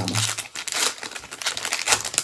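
A Topps Gypsy Queen baseball card pack torn open by hand, the wrapper crinkling in a quick run of small crackles.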